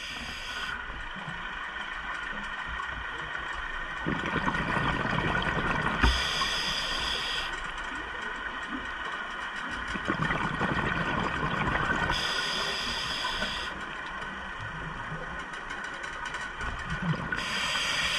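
Scuba diver breathing through a regulator underwater. Each inhale is a short hiss, about every six seconds, and between them the exhales go out as gushes of bubbles.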